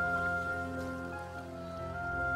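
Background music: a slow melody of long held notes that step from pitch to pitch over a steady low accompaniment.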